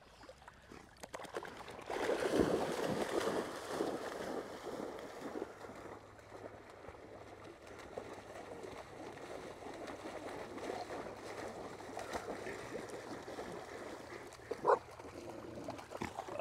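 Water splashing and sloshing as retrievers wade and swim through shallow flood water. The loudest splashing comes about two seconds in, then it settles to a lower, steady sloshing.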